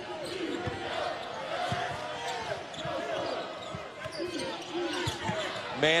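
Basketball being dribbled on a hardwood court, with a few irregular low thuds over the steady background noise of a crowded arena and scattered voices.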